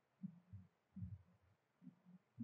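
Near silence, broken by a few faint, low thuds.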